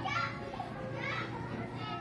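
Children's voices, high-pitched chatter and calling in the background.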